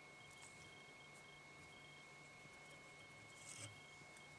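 Near silence: quiet room tone, with one faint short snip of fly-tying scissors trimming the tail material on the hook about three and a half seconds in.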